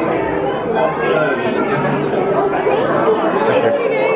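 Indistinct chatter: several people talking at once, no single voice clear.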